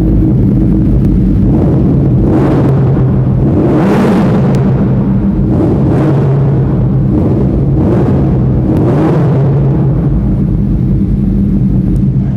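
Suzuki Hayabusa's inline-four engine running through an aftermarket Scorpion exhaust and being revved in several short throttle blips, about five swells over a steady run.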